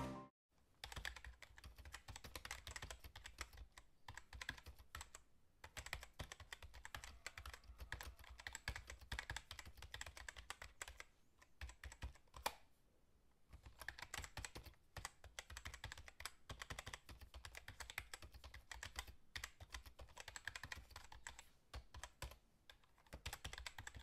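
Faint, rapid keyboard typing: a long run of quick keystroke clicks with a couple of short pauses.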